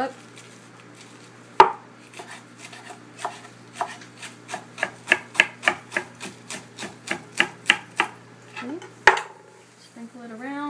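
Chef's knife slicing rolled-up basil leaves on a wooden cutting board. There is a sharp knock about a second and a half in, then a run of quick, even cuts at about three a second, and another loud knock near the end.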